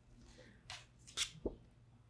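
A few brief soft rustles of a photo card being handled, with a soft low thump about halfway through.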